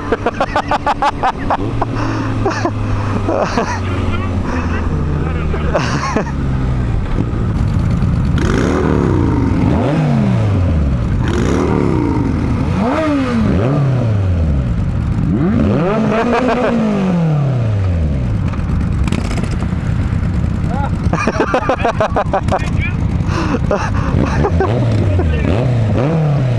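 Motorcycle engines running steadily, then revved again and again while stopped from about eight seconds in, each rev a quick rise and fall in pitch.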